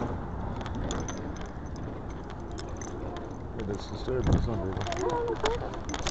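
Body-worn camera picking up a person walking, with light clicks and jingles over a low rumble. A voice comes in softly about three and a half seconds in.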